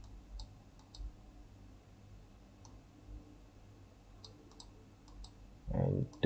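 Faint computer mouse clicks, scattered and some in quick pairs, over a low steady hum; a voice begins near the end.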